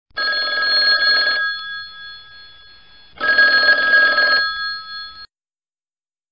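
Telephone bell ringing twice, each ring about a second long with a brief fading ring-out after it.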